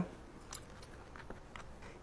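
Faint soft, wet handling of raw skirt-steak strips being braided by hand on a cutting board, with a few small ticks over low room tone.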